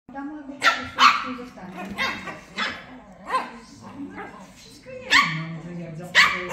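Shih Tzu puppies barking back and forth: about six short, high-pitched barks, the loudest in a quick pair near the start and another about five seconds in.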